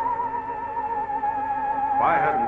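Eerie sci-fi film-score music: a single high, wavering tone with a fast vibrato that glides slowly downward in pitch.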